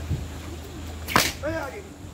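A thick rope lashed like a whip, giving one sharp crack about a second in.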